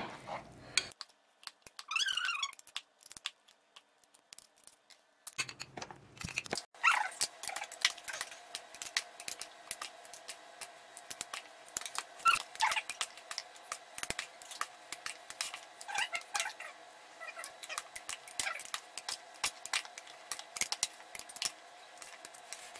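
Glass jars and a metal spoon knocking and clinking in frequent small taps as chopped vegetable salad is packed into the jars by hand. A short high rising squeak about two seconds in, and a few more brief squeaks later.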